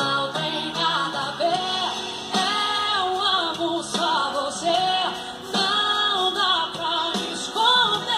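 Live band music: a woman singing a melody in phrases over acoustic guitars, bass and accordion.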